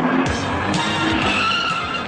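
Action-film soundtrack: music mixed with a loud rushing noise, with a high wavering squeal in the second half.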